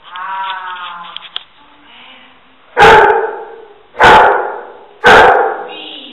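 A search-and-rescue dog barking three times, about a second apart: the bark indication that it has found the hidden person in the rubble.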